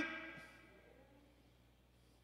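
Near silence: the echo of a man's voice in a large room fades out in the first half second, leaving faint room tone.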